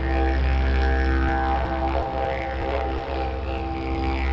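A plain eucalyptus didgeridoo being played: a steady low drone with a stack of overtones whose upper tones shift as the mouth shapes the sound. Around two to three seconds in, the drone breaks into a quick rhythmic pulsing before settling back into the steady tone.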